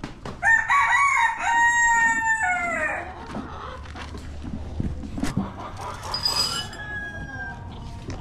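A rooster crows once: a long call starting about half a second in, falling in pitch at its end. A fainter, higher call from the flock follows later.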